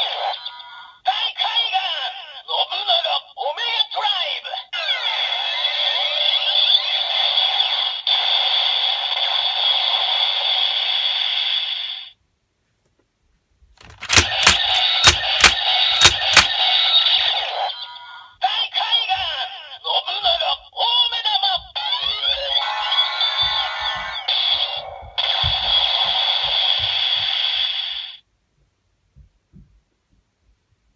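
DX Ghost Driver toy belt loaded with the Nobunaga Ghost Eyecon, playing its electronic voice calls and rap-style transformation music through a small speaker. It plays twice, each run about twelve seconds long and cut off abruptly, with a short silence between; the second run starts with several sharp plastic clicks of the belt's lever.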